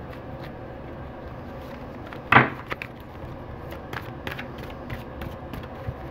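A deck of tarot cards being shuffled by hand: small scattered card clicks, with one loud sharp snap of the cards a little over two seconds in.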